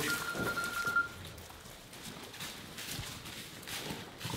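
Faint shuffling and light knocks of sheep and handlers moving through a straw-bedded barn pen and alley. A thin steady high tone sounds for about the first second.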